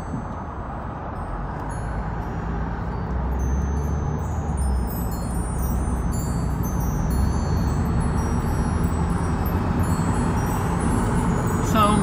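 Car cabin noise while driving: a steady low engine and road rumble that grows a little louder, with faint high tinkling above it.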